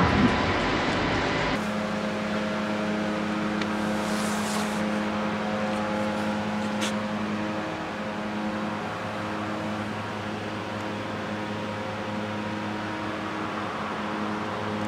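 Running industrial machinery: broad machine noise for about the first second and a half, then a steady machine hum with several held tones and a couple of faint clicks.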